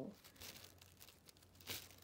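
Near silence with faint rustling as a hand handles a plastic model horse on artificial turf, with one slightly louder rustle near the end.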